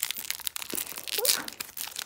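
A crinkly plastic blind-bag pouch being torn open and crumpled by hand: a dense, irregular run of crackles, busiest and loudest about a second in.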